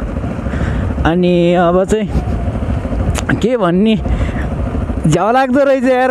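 Yamaha R15 V3's single-cylinder engine running steadily as the motorcycle is ridden at low speed, mixed with a low rumble of wind on the microphone. A man's voice talks over it in three short stretches.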